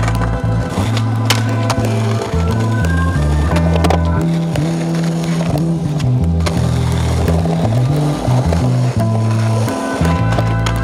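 Skateboard wheels rolling on pavement, with a few sharp clacks of the board popping and landing, mixed under music with a heavy, melodic bass line.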